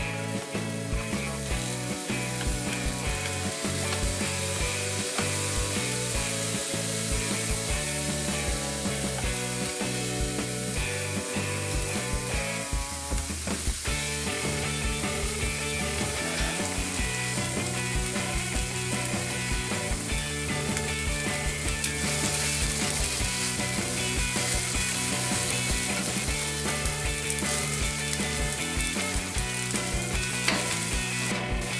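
Sliced onions sizzling and crackling steadily in hot oil in an iron frying pan, with the last slices dropping into the pan at the start.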